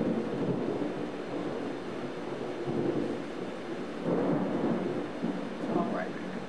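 Thunder rolling in long rumbles over steady rain, swelling again about four seconds in.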